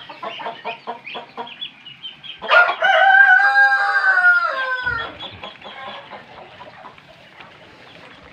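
A rooster crowing once, a long, loud, even-pitched crow that falls away at the end, starting about two and a half seconds in. Before it comes a quick run of short peeping and clucking calls from the poultry, and fainter calls follow.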